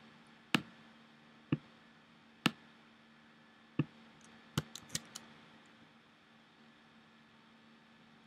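Sharp single clicks of a computer mouse and keyboard. Three come about a second apart, then one more, then a quick run of four near the middle, over a faint steady hum.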